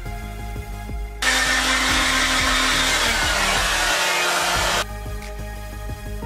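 Handheld hair dryer blowing on gelled hair, starting about a second in, running evenly with a steady hum for about three and a half seconds, then cutting off suddenly. Background music plays underneath.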